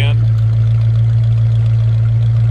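1969 Dodge Dart GT idling steadily through its dual exhaust, a low even hum.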